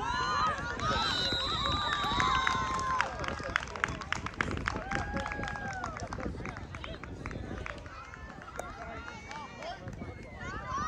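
Voices of players, coaches and spectators calling and shouting across an open football field, too distant for words to be made out. Around three to five seconds in there is a run of sharp claps, and about a second in a thin steady high tone lasts for over a second.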